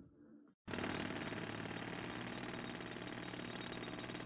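Construction-site sound effect of a jackhammer hammering steadily in a fast, even rattle. It starts suddenly after a brief silence, a little over half a second in.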